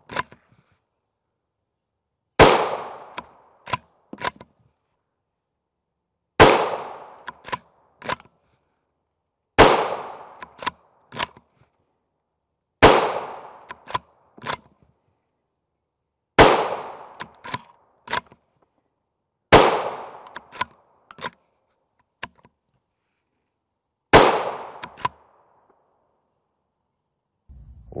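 Seven .223 Remington rifle shots from a bolt-action TC Compass, fired one every three to four seconds, each with a short fading echo. After each shot come a few sharp metallic clicks as the bolt is cycled.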